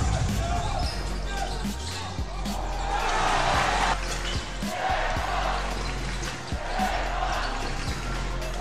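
Basketball bounced repeatedly on a hardwood court during play, one bounce every second or less, over arena music and voices.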